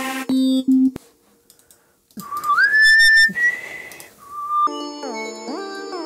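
Synth lead presets being auditioned in FL Studio: a few short synth notes, a second of near silence, then a whistle-like lead tone that slides up in pitch and holds. From about five seconds in, a synth melody plays with its notes gliding from pitch to pitch.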